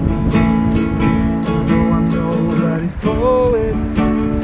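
Acoustic guitar and ukulele strummed together in a steady rhythm, playing chords in an instrumental passage between vocal lines.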